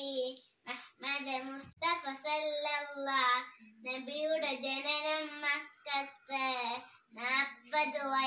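A young girl singing a Malayalam Islamic song unaccompanied: held, wavering notes in short phrases, with brief breaths between them.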